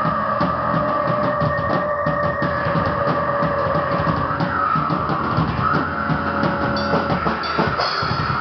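Rock band playing metal live on a drum kit, bass guitar and electric guitar. Steady drumming runs under long held guitar notes that change pitch a few times.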